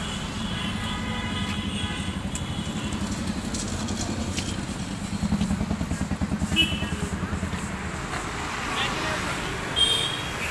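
An engine running with a low, fast-pulsing rumble that swells a little in the middle, with a few short high-pitched tones over it.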